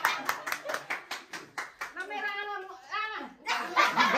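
Hands clapping in a quick, steady rhythm of about six claps a second. The clapping breaks off midway and starts again near the end.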